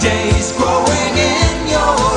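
Pop song with a steady drum beat and singing, playing as the sound of a television test-card broadcast.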